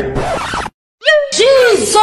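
A man's loud, wordless shouting cries, cut to dead silence for about a third of a second past the middle, then picking up again with quick rising yelps.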